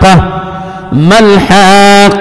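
A man chanting Qur'anic verses in melodic recitation, drawing out long notes. The voice drops off briefly, glides up in pitch about a second in, and then holds a long steady note.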